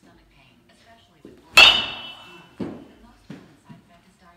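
A baseball bat striking a ball in a batting cage: one sharp, loud crack with a brief ringing tone, about a second and a half in, followed by a few softer thumps.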